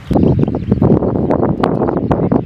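Wind buffeting the camera microphone in uneven gusts, with a few sharp clicks and knocks.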